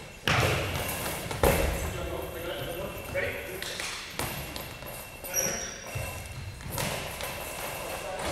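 A goalball, the heavy rubber ball with bells inside, hits the gym floor twice with heavy thuds about a quarter second and a second and a half in, echoing in the hall, with voices around it.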